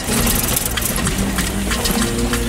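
Car engine running as the car drives over rough, stony ground, with many short clicks and rattles.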